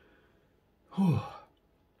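A man sighs once, about a second in: a short, breathy sigh that falls in pitch.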